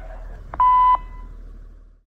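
A single short electronic beep, one steady high tone lasting under half a second, over a low steady rumble that fades away near the end.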